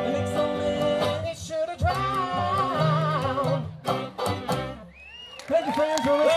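Acoustic bluegrass band of banjo, fiddle, clarinet, guitars and upright bass playing the closing bars of a song, with final chords about four seconds in. After a short dip, voices call out as the music ends.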